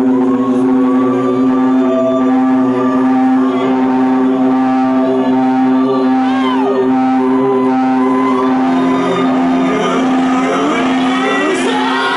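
Live rock band holding a sustained, droning chord on electric guitars and bass, with a few notes sliding in pitch over it. Near the end it builds up into the full band playing.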